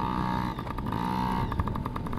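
A motorcycle engine running, its revs rising and falling, turning into a fast, even pulsing about one and a half seconds in.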